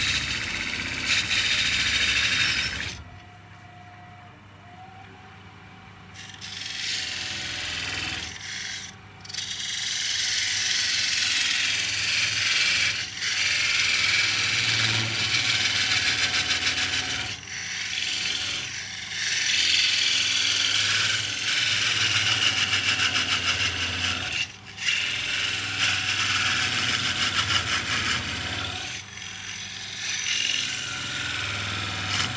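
A parting tool cutting into a large oak blank spinning on a wood lathe, parting off the lid: a steady, loud scraping hiss over the lathe's low hum. The cut stops for about three seconds near the start and then for several shorter moments as the tool is eased back.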